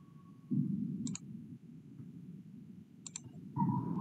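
Computer mouse clicks: a quick double click about a second in and a short cluster of clicks about three seconds in. A brief low rustle comes just before the first clicks.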